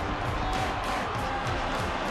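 Background music over the dull, steady noise of a stadium crowd.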